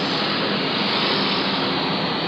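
Steady traffic noise from a busy street, with motorbikes and cars passing.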